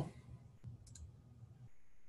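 Faint computer mouse clicks, two close together about a second in, with a faint steady high whine setting in near the end.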